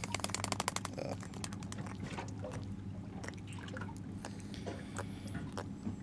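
A live goggle-eye baitfish flapping in the hand, a quick run of wet slaps for about the first second, then scattered clicks and rustles as the rig wire is worked into it. A steady low hum of the boat's engine runs underneath.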